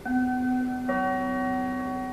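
Public-address attention chime before an airport announcement: a bell-like note strikes and rings on, and a second, lower note joins it about a second in, both sustaining together.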